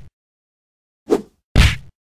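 Punching sound effect: two quick hits a little past one second in, a short light one followed by a heavier punch with a deep low end.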